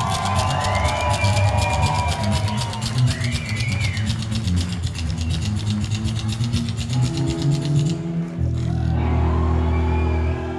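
A rockabilly band playing live at a fast tempo, with a slapped upright double bass clicking out a rapid, even beat under electric guitar. About eight seconds in the fast clicking drops out, leaving a held low chord.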